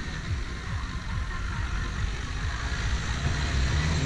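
Renault Duster 4x4's dCi diesel engine working under load as the car drives through soft sand, its low engine note growing louder in the last second as it draws near.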